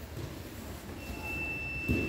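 A steady, high-pitched electronic beep starts about a second in and holds for about a second and a half, over a low rumble of the hall. A dull thump comes just before the end.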